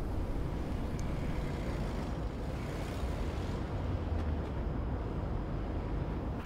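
Audi SUV driving slowly past: a steady low engine and tyre rumble that swells a little about four seconds in.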